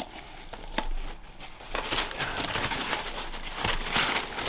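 Embossed paper packing in a cardboard box rustling and crinkling as hands dig through it, with a sharp click about a second in; the rustling grows busier from a little under halfway.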